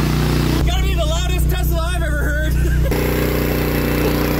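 Ported gasoline generator engine mounted in the rear hatch of a Tesla Model S, running at a steady speed as it charges the car's battery.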